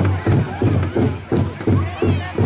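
Powwow drum struck in a steady beat, about three beats a second, with the singers' high-pitched voices wavering over it.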